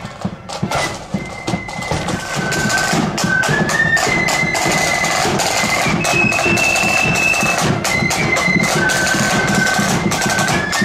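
Marching flute band playing: a high flute melody over side drums, with sharp drum strokes in a steady march beat. The music dips at the start, and a new tune comes in about a second in.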